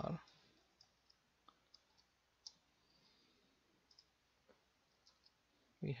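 About ten faint, irregularly spaced clicks of computer input at a desk, the mouse and keys of a computer being worked, with a word of speech at the start and at the end.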